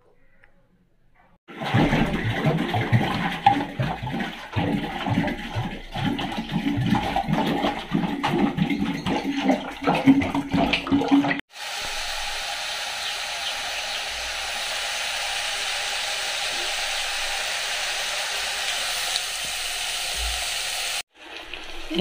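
Stone pestle pounding garlic and ginger in a granite mortar, a run of irregular knocks for about ten seconds. Then squid rings sizzling in hot oil in a pan, a steady hiss that stops suddenly near the end.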